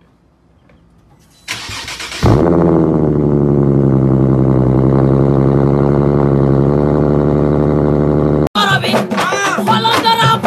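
Motorcycle engine starting and then running steadily for about six seconds before cutting off suddenly, followed by music near the end.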